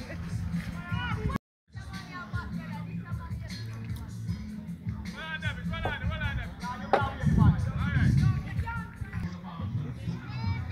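Music with a steady bass line under people's voices talking and calling out, with a few sharp knocks. The sound cuts out completely for a moment about a second and a half in.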